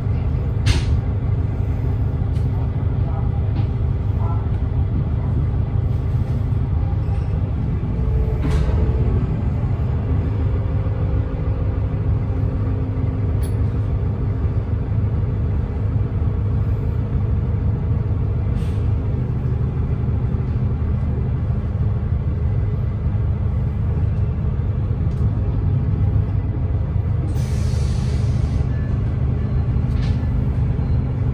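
Cabin sound of a 2010 Gillig Low Floor Hybrid 40' transit bus with its Cummins ISB6.7 diesel and Allison hybrid drive: a steady low rumble with a faint hum. Brief air hisses come now and then, and a longer burst of air hissing comes near the end, from the bus's air brakes.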